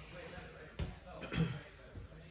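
Two grapplers moving on a foam jiu-jitsu mat: a single sharp thump on the mat a little under halfway through, followed by a short low vocal sound.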